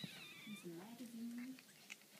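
A goldendoodle puppy's high, thin whine, wavering and fading out about half a second in.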